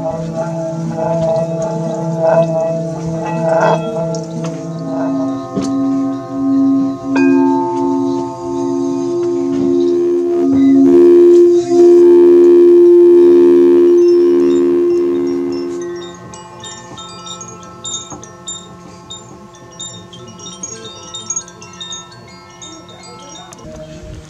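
Singing bowls ringing in long, overlapping tones with a slow wavering beat. One bowl, likely the crystal bowl, swells to a loud, pure hum about halfway through, then dies away. In the second half, small chimes add light, high tinkling notes over the fading bowls.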